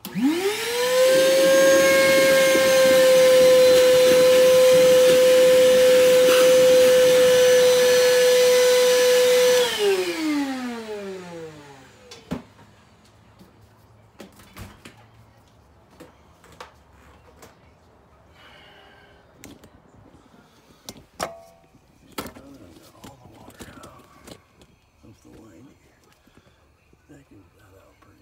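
Wet/dry vacuum sucking water out of a clogged kitchen sink drain through a hose pushed down the drain. The motor's whine rises quickly to a steady high pitch, and it is switched off about ten seconds in, winding down with a falling whine. Then come a few light knocks and clicks.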